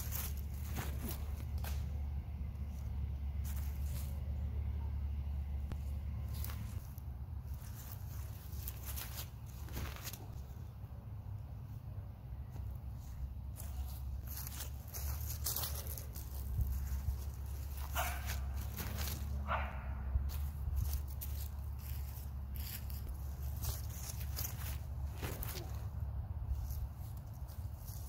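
Steady low rumble of wind on the microphone in an open field, with scattered clicks and a dog barking twice a little past the middle.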